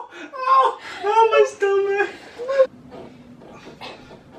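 People laughing in long, wavering bursts for about two and a half seconds. Then the sound drops to quiet room tone.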